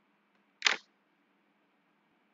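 A single sharp click about two-thirds of a second in, over a faint steady background hiss.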